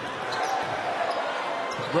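Basketball being dribbled on a gym floor, a few faint bounces over steady arena background noise.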